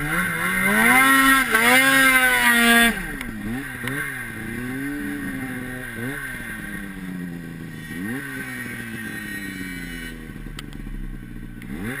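Two-stroke Ski-Doo snowmobile engine revving hard for about three seconds, then the throttle is cut abruptly. It runs on at a lower pitch with several short blips of throttle, and revs up again near the end.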